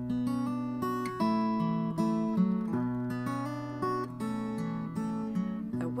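Acoustic guitar strummed, playing the opening chords of a song with no voice; the chords change every half second to a second.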